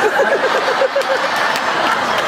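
Audience laughing, with one person's quick ha-ha-ha laugh of about eight short beats standing out in the first second.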